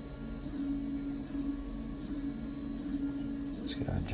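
A steady low hum, with a couple of brief clicks near the end.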